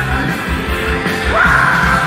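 Live rock band playing a fast rock-and-roll number with a driving beat; about two-thirds of the way in, a yelled vocal swoops up and is held high.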